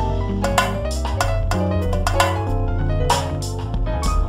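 Roland V-Drums electronic drum kit playing bongo-sound fills in a triplet feel, sharp hand-drum hits at an uneven rhythm over a backing groove of sustained bass and keyboard notes.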